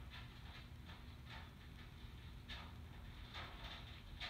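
Near silence: faint room tone with a few soft, faint rustles from fingers handling beading thread and a beaded pendant while tying a knot.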